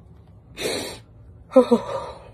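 A woman crying: a breathy sob or gasp about half a second in, then a short voiced cry near the end.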